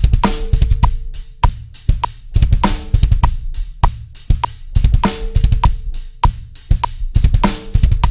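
Drum kit playing a half-time groove broken up by rapid double bass drum runs of 16th-note triplets, with snare and cymbals, over a steady metronome click.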